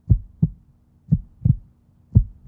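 Heartbeat sound effect used as a suspense cue: two low double thumps, about a second apart, over a faint steady hum.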